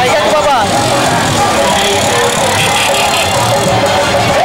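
People's voices over a loud, steady background din, with some music underneath.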